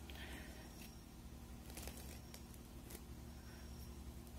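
Faint rustling and a few soft clicks as hands handle a crocheted rug, over a steady low hum.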